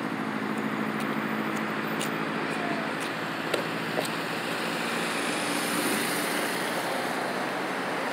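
Road traffic going through an intersection: cars and a motorcycle passing, with steady engine hum under tyre noise and two faint clicks about halfway through.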